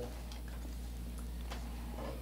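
Quiet room tone: a steady low hum with a few faint, scattered clicks.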